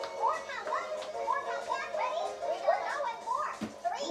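High-pitched children's voices chattering over background music, with a low thump near the end as feet land on a plastic aerobic step platform.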